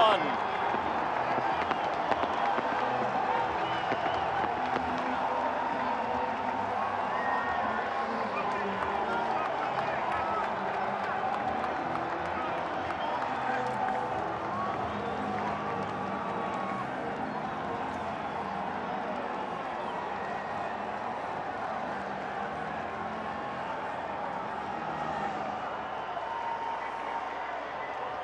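Ballpark crowd cheering and applauding, a steady din of many voices that slowly fades a little.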